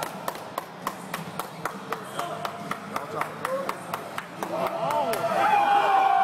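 Teammates clapping in a steady rhythm, about four claps a second, to urge on a lifter during a heavy bench press. From about four and a half seconds in, shouting voices rise, with one long held yell near the end.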